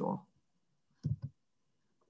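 A short cluster of computer mouse clicks about a second in, after a word of speech trails off.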